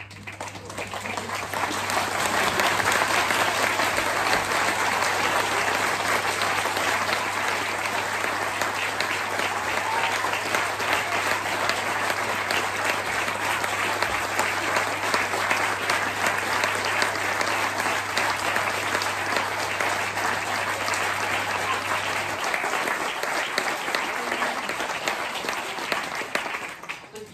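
An audience applauding: dense clapping that builds over about two seconds, holds steady, and dies away near the end. A steady low hum runs underneath and stops about three-quarters of the way through.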